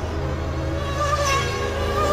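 High-pitched buzzing whine of nitro RC car engines (small glow-fuel two-strokes) revving, with the pitch wavering about a second in and again near the end, over background music.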